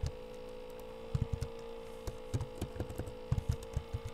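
Computer keyboard keys clicking in an irregular run from about a second in until near the end, over a steady electrical hum.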